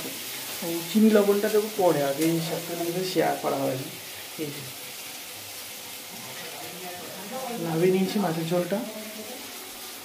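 Onion, garlic and green chillies sizzling steadily as they fry in oil in a wok.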